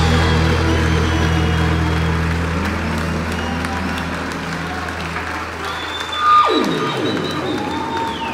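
The last held chord of a live band's rock cover fades out under audience applause and cheering. About six seconds in, a sliding note drops steeply in pitch as the song ends.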